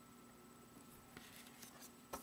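Near silence: faint room hiss with a few soft, faint ticks of cards being handled from about a second in.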